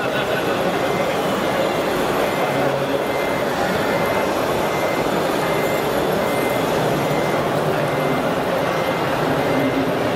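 Fine gravel pouring steadily from a loading hopper chute into the metal tipper body of an RC dump trailer, a continuous even rush of stones.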